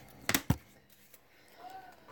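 A plastic team bag of trading cards being handled and opened, with a few sharp crackles or snaps about a third to half a second in, then quieter handling.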